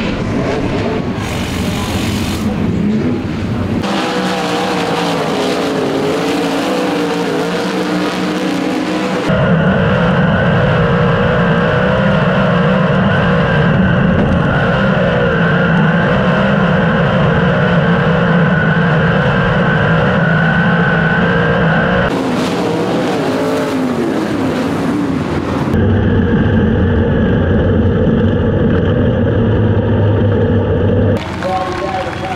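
Onboard sound of a sprint car's 410 V8 engine at racing speed on a dirt oval. The engine note rises and falls with the throttle through the turns, then holds a steady, loud pitch. It changes abruptly a couple of times.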